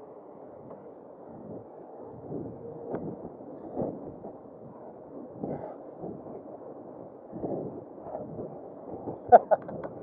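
Muffled wind and tyre noise from an e-bike riding along a tarmac lane, swelling and easing. A few sharp knocks come near the end.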